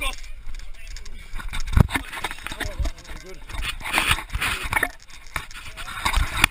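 Excited, unintelligible shouting from several people, with two heavy thumps about two and three seconds in.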